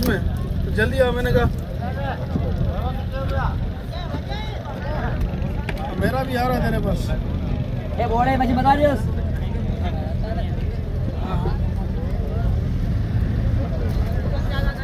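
A fishing boat's engine running with a steady low rumble, under men's voices talking on and off.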